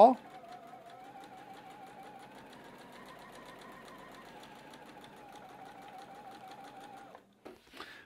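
Electric sewing machine stitching a seam through two layers of quilting cotton: a steady motor whine with rapid needle ticking, rising slightly in pitch mid-way and stopping about seven seconds in.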